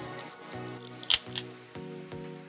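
Background music playing, with two sharp cracks a moment apart about a second in as the shell of a boiled blue crab is snapped apart by hand.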